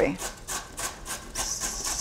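A carrot being grated on a metal box grater, in rapid, even rasping strokes of about four a second.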